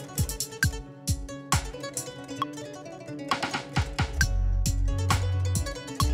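A song playing back from Ableton Live, with plucked guitar-like strings over a steady kick-drum beat and Ableton's metronome clicking along as the track is warped to the grid. A deep bass comes in about four seconds in.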